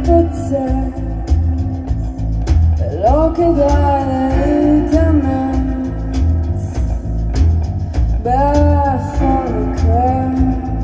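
Live band playing a rock song on electric bass, drum kit and piano, with a steady bass line under the drums. A sung vocal phrase comes in about three seconds in and another near the end.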